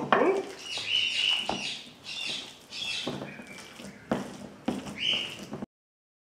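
A spatula stirring thick mashed potato with chopped sausage and meat in an enamel bowl: wet squelching with a few knocks of the spatula against the bowl. The sound cuts off suddenly just before the end.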